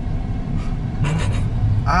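Steady low rumble of a car's engine and tyres, heard from inside the cabin as it drives slowly along a street.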